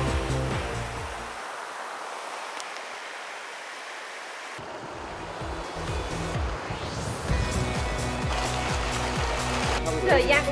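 Background music with a steady beat. For a few seconds near the start the bass drops away and leaves a rushing, wash-like noise. The beat comes back and builds, with a rising sweep just before it returns in full.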